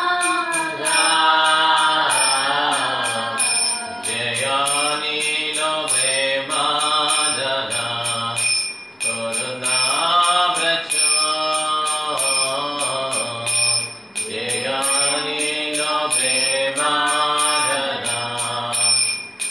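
A man chanting in Sanskrit, in a melodic sing-song voice, over a steady low drone and a regular high metallic ticking.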